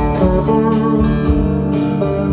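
Acoustic guitar played flat on the lap with a slide: plucked, sliding notes over steady, sustained low notes, with no singing.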